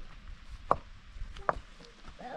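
Stones knocking together as rocks are set by hand into a dry-laid stone wall: two sharp clacks under a second apart.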